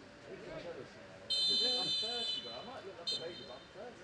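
Referee's whistle: a long blast of about a second, then a short blast, signalling half-time. Voices talk in the background.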